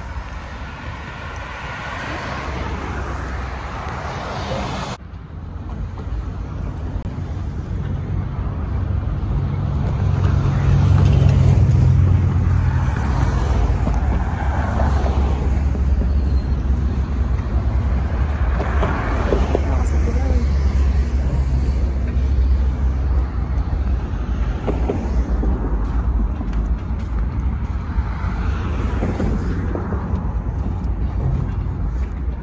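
Road traffic: cars driving past on the overpass road alongside. The noise is steady and low-pitched and is loudest about ten seconds in.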